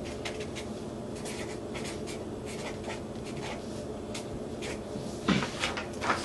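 Pen writing on a sheet of paper, a run of short, irregular scratching strokes. Near the end the sheet is picked up with a louder rustle.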